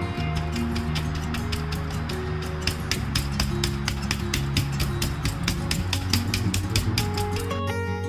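A kitchen knife's blade beating prawns wrapped in a plastic bag, a fast, even run of sharp strikes at about five a second, flattening the butterflied prawns so they won't curl when cooked. Guitar music plays underneath.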